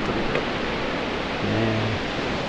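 Steady rushing noise of ocean surf breaking along a seawall.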